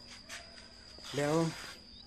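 A steady high-pitched insect trill in the background, with one short spoken word about a second in.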